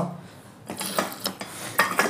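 Hard dalgona honeycomb candy discs being handled on a tabletop: a few sharp clicks and scrapes.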